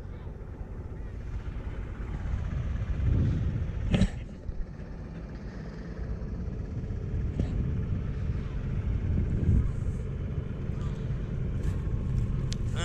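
Tractor engine running steadily under load as it pulls a plough through the soil, a low rumble, with a sharp knock about four seconds in.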